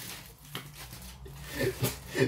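Faint crinkling of aluminium foil as hands shift a large foil-wrapped baguette sandwich, with a short murmur of a man's voice near the end.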